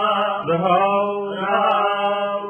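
A man reciting a Gurbani verse in a slow chant, holding each syllable on a near-steady pitch.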